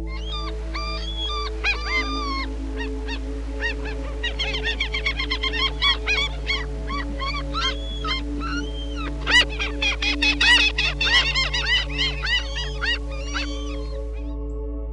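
A flock of black-headed gulls calling: many short cries that rise and fall in pitch, crowding together from about four seconds in and loudest around ten seconds. A steady ambient music bed plays under them.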